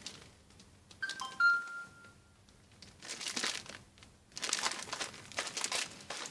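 Clear plastic bags around packaged children's T-shirts crinkling in bursts as they are handled. About a second in there is a brief high tonal chirp, the loudest sound.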